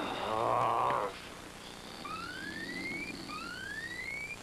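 A wavering cry lasting about a second, then, from about two seconds in, an alarm of rising whooping tones, one every second or so, sounding an alert.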